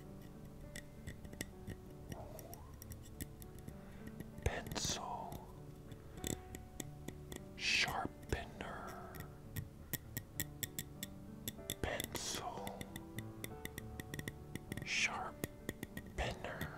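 Wooden pencil twisted in a small handheld sharpener held close to the microphone: a steady run of fine crackling clicks as the blade shaves the wood, with four louder hissing sounds spaced a few seconds apart.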